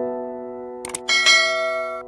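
A subscribe-button sound effect: a quick double click a little under a second in, followed by a bright notification bell ding that rings out. Background music with sustained notes plays underneath.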